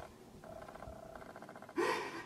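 A man crying into his hands: faint, shaky breathing, then a sharp sobbing gasp near the end.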